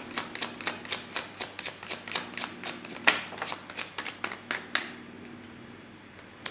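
A deck of tarot cards being shuffled by hand: a quick run of papery clicks, about four or five a second, that stops about five seconds in.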